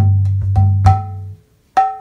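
Mridanga played with the hands in a slow beat: a deep bass note from the large head rings under crisp, pitched strokes on the small treble head. It stops about a second and a half in, and a loud new stroke follows near the end.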